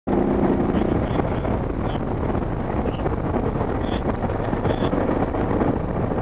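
Dual-sport motorcycle engine running at steady road speed on a gravel road, heavily mixed with wind buffeting on the helmet-mounted microphone.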